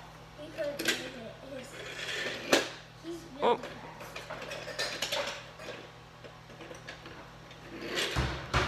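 A small toy train engine pushed and rolling along a wooden toy railway track, with scattered light clicks and knocks as it runs over the track joints and curves. Soft voices are heard underneath.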